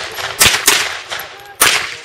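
AR-style semi-automatic rifle firing three shots: two about a quarter second apart roughly half a second in, then a third near the end.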